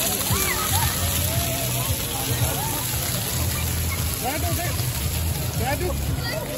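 Floor fountain jets spraying and splashing onto wet stone paving, a steady wash of water noise, with children's and adults' voices calling around it.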